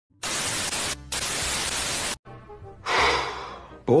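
Television static hiss, even and steady for about two seconds with a brief break near one second, then cutting off. Faint music follows, with a short rushing swell about three seconds in that fades away.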